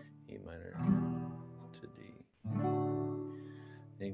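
Acoustic guitar chords strummed twice, about two seconds apart, each chord ringing and fading.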